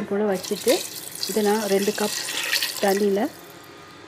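Water running in a rushing stream for about two seconds in the middle, as for the water added to the pressure cooker, with a woman's voice speaking in short bursts over it.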